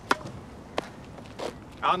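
Tennis ball in play on a hard court: three sharp knocks of racket strikes and ball bounces, about two-thirds of a second apart, each fainter than the last.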